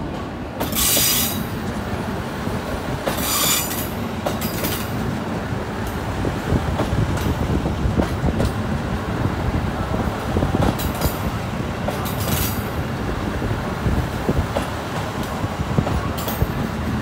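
KiHa 85 series diesel multiple unit rolling slowly past as it pulls into a platform: a steady rumble of the diesel engines and wheels on the rails. Short high wheel squeals come about a second in, around three to five seconds in, and again twice near the end.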